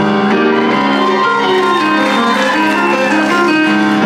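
Grand piano playing the introduction to a bossa nova song, a steady flow of changing chords.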